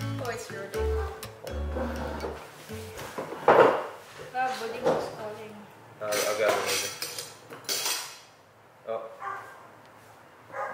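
Metal cutlery clinking against ceramic plates and bowls on a dining table, several separate clinks, with background music that stops a couple of seconds in.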